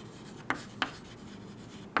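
Chalk writing on a chalkboard: faint scratching of the strokes, with two sharp taps of the chalk about half a second and just under a second in.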